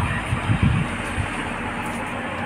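Wind buffeting the microphone outdoors, an irregular low rumble over a steady rushing noise.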